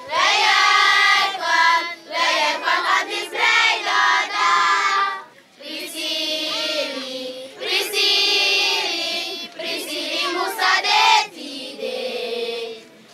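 Children singing together in high voices, phrase after phrase, with a short break about five seconds in.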